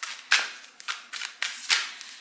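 A deck of tarot-style oracle cards being shuffled by hand: a run of sharp, uneven card snaps and slaps, several a second.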